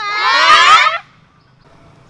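Several people scream together in fright for about a second, then stop abruptly.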